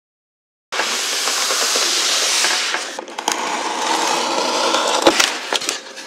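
A moment of silence, then packaging being handled as a Styrofoam delivery box is opened: a loud, steady crinkling hiss for about two seconds, then scattered rustling, clicks and a few sharp knocks.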